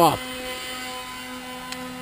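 A steady background machine hum with a faint even-pitched drone, and a small click near the end.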